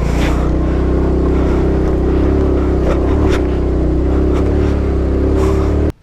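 TVS Jupiter scooter's single-cylinder engine running steadily under load as it climbs a steep, rough mountain road, with wind and road noise over it and a couple of sharp knocks. The sound cuts off suddenly just before the end.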